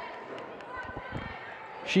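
Faint sound of a basketball game in play on a hardwood court: players' footsteps with a few low thuds about a second in. A commentator's voice comes in at the very end.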